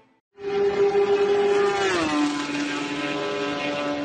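Race car engine holding a steady high note, which drops quickly to a lower note about halfway through, as when a car passes, then holds and fades away.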